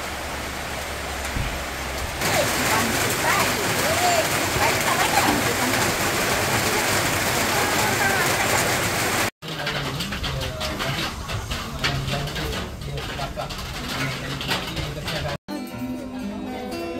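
Heavy rain falling in a steady hiss for the first nine seconds or so. After a sudden cut it gives way to quieter background voices and light clatter, and guitar music starts just before the end.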